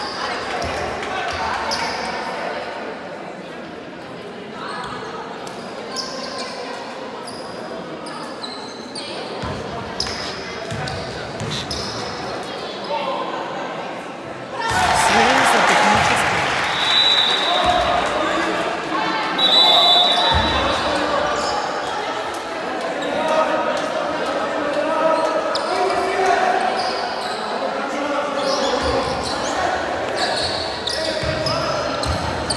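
Basketball game in a sports hall: a ball bouncing on the wooden court under spectators' chatter, with the crowd noise suddenly rising about halfway, followed by a referee's whistle blown twice.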